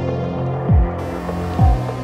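Electronic dub music: a sustained low bass drone under layered synth tones, with two deep kick drums that drop sharply in pitch.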